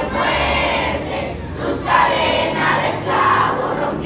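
A crowd of schoolchildren singing together in unison, many voices in long phrases.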